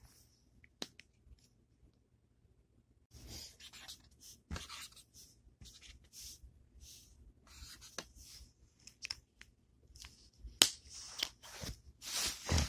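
Short, scratchy colouring strokes on paper, starting about three seconds in and repeating unevenly, with a few sharp clicks among them, the loudest near the end.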